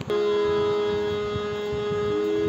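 Harmonium holding a steady, reedy note as keys are pressed, with a second lower note stopping about halfway through.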